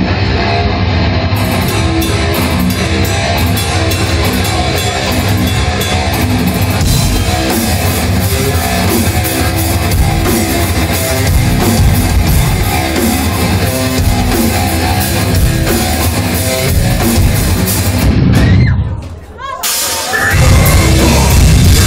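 Rock band playing live at loud volume, electric guitars and a drum kit; the drums and cymbals come in about a second in over the guitar. Near the end the sound drops away sharply for about a second before the band comes back in.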